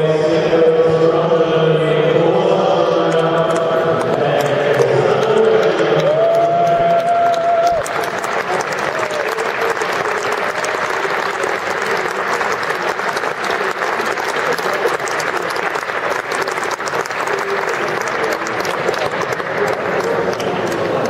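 Music with singing ends on a long held note about eight seconds in. Audience applause then takes over and runs on steadily.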